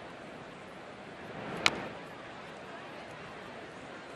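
Steady ballpark crowd murmur, with one sharp smack of the pitched baseball arriving at the plate about one and a half seconds in.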